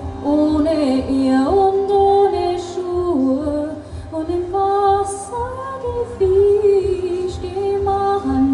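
Two piano accordions playing a slow melody in long held notes over sustained chords, with a woman's voice singing along.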